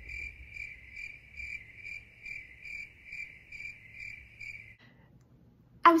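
Cricket chirping sound effect: a steady high trill that pulses about twice a second and stops about a second before the end.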